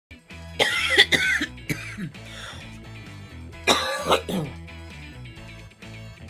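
A woman coughing hard twice, each a harsh, throaty cough about a second long, the first about half a second in and the second near four seconds, over background music with a steady low bass line.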